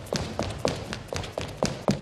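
Quick footsteps: a steady run of sharp taps, about four a second, each with a short echo.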